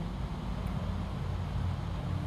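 Steady low rumble of outdoor background noise, even and unbroken.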